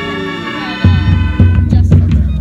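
High school marching band music: a held chord fades away, and about a second in a loud, deep rumble with heavy thumps comes in underneath.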